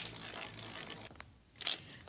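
A plastic Beyblade spinning top whirring and scraping faintly on a plastic stadium floor, dying out after about a second. A brief clatter follows near the end.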